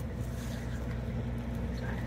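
Steady low hum of an engine running nearby, with no change in pitch.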